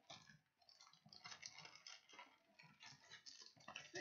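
Faint crinkling and light irregular clicks of foil-wrapped Bowman baseball card packs being lifted out of the box and stacked on a table.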